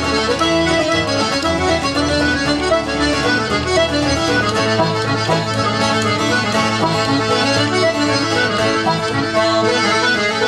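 Irish button accordion playing a fast, unbroken reel melody, with acoustic guitar strumming a chordal accompaniment underneath.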